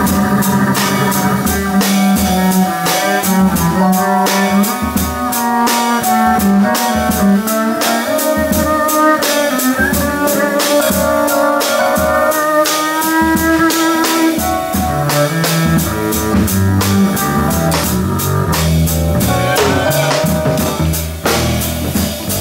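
Live small-group jazz: a plucked upright double bass, a drum kit with steady cymbal strikes, and a melody line played above them.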